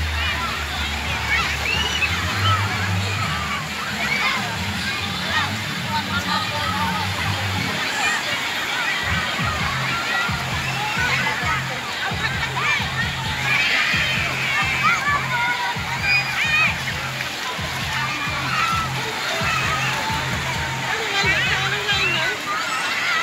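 Many children shouting and calling out while splashing in a wave pool, over the wash of water sloshing. Music with a bass line runs underneath and turns into a pulsing beat about a third of the way in.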